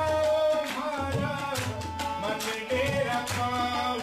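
Tabla playing in a live Rajasthani folk ensemble: crisp strokes on the small drum and deep bass-drum strokes that bend upward in pitch, under a sustained melody line.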